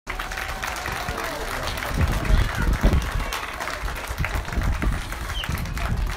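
An outdoor crowd applauding, many hands clapping together with scattered voices, and a few low thuds about two to three seconds in.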